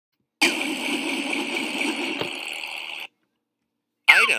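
Cartoon propeller whir sound effect for a small flying robot: a steady buzzing whir lasting about two and a half seconds that cuts off suddenly, with a brief tick partway through.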